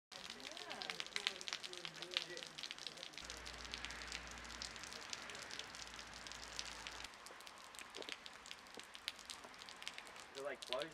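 Rain falling on a wet yard, heard as many irregular sharp drops and ticks. A faint voice talks in the first couple of seconds, and a low hum runs for a few seconds in the middle.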